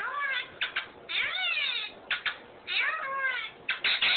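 Pet parrot calling: a string of short squawks and longer high calls that rise and then fall in pitch. The longest call comes just after a second in.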